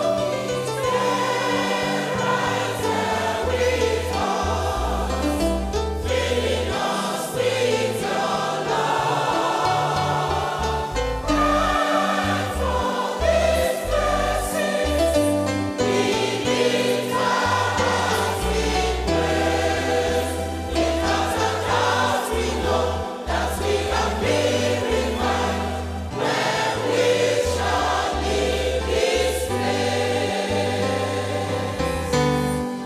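A choir singing a gospel song with instrumental accompaniment and a bass line that moves in steps.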